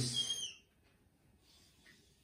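Whiteboard marker squeaking at a high pitch for about half a second as it draws, then near silence.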